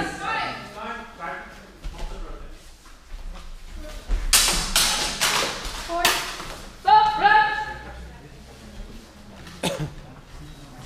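Longsword fencing exchange in a large gym hall: a flurry of loud, noisy clashes and scuffles about four to six seconds in, voices calling out around seven seconds, and one sharp knock near the end.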